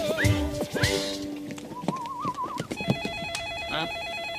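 A short musical scene-change jingle that fades about a second in, followed by a telephone ringing with a rapid electronic warbling trill from about halfway through.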